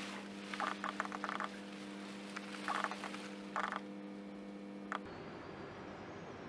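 Handling noise: several short bursts of rustling clicks as gloved hands work over a person's hand, over a steady electrical hum that cuts off abruptly about five seconds in.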